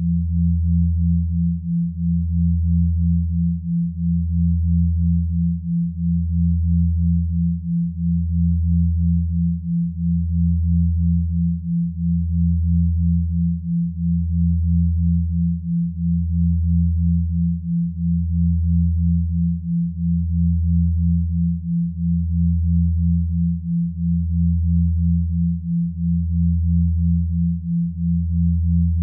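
Synthesized binaural-beat sine tones: a low hum that swells and dips about every two seconds, under a slightly higher tone pulsing about twice a second, both steady throughout with nothing else over them.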